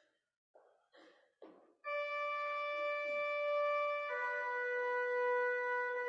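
Organ entering about two seconds in with held, sustained chords, moving to a new chord about two seconds later. Before it, a few brief handling noises.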